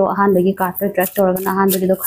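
A woman speaking steadily, in Manipuri mixed with English.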